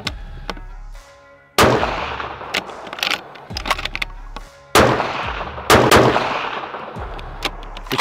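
Bolt-action precision rifle firing three shots, each followed by a long echoing tail, with smaller metallic clicks of the bolt being worked between shots.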